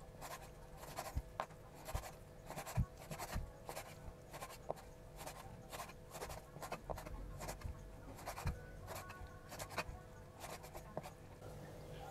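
Chef's knife cutting raw pork diaphragm tendon on a wooden cutting board: irregular soft cuts and taps of the blade against the board, about two or three a second, with a few duller thuds.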